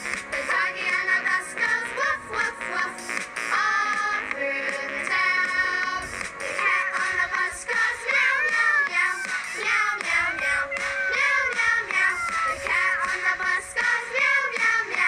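A children's nursery-rhyme song: a high-pitched, cartoon-like singing voice over bright backing music.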